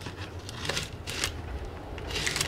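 Dull razor blade cutting through packing tape and paper wrapping: faint scratchy crackling with a couple of short, sharper scrapes, over a low hum. The blade is not cutting well because it has gone dull.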